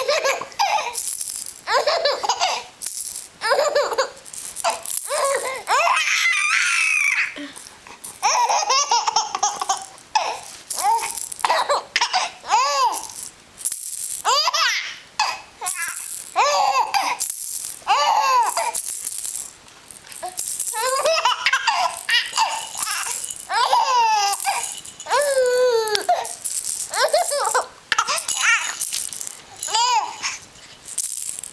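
A four-month-old baby laughing and giggling in repeated short bursts and squeals while a clear plastic rattle is shaken over him, its rattling heard throughout.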